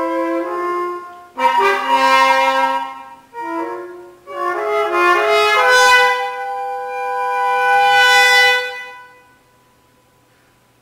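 Flute and French horn playing a contemporary chamber duo together: short phrases broken by brief pauses, then long held notes that stop about a second before the end.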